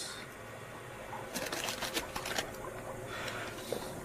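Stiff parchment rustling as it is handled: a quick run of dry crackles lasting about a second, starting about a second and a half in.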